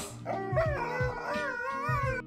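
A dog howling: one long, wavering call over background music.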